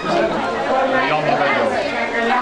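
People talking over one another: chatter of several voices.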